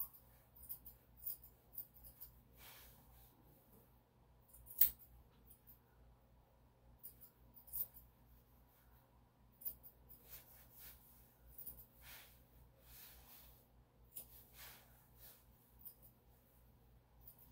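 Grooming scissors snipping through a puppy's coat: faint, short, irregular snips in small clusters, with the loudest single cut about five seconds in.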